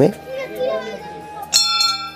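A small brass temple bell struck once about one and a half seconds in, ringing on with several clear overlapping tones. Faint voices of people, children among them, can be heard before it.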